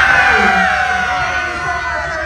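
A group of women cheering and shouting together in celebration, high, drawn-out whoops overlapping one another.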